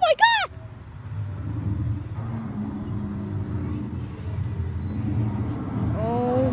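A car engine running close by with a steady low rumble. Right at the start, two short, loud, high-pitched squeals from a voice rise and fall in pitch.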